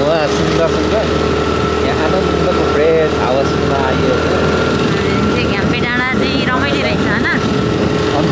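Scooter engine running at a steady cruise under wind and road noise while riding. A person's voice, wavering up and down in pitch, comes in at times, most in the second half.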